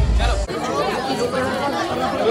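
Crowd of wedding guests chattering, many voices talking at once. Loud bass-heavy music underneath cuts off suddenly about half a second in.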